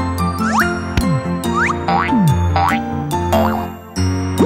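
Bright children's background music with cartoon sound effects on top: a string of quick pitch glides, some rising and some falling, about two a second, as animated toy parts move into place. The music drops away briefly near the end.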